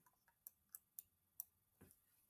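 About five faint, short clicks, irregularly spaced, in otherwise near silence.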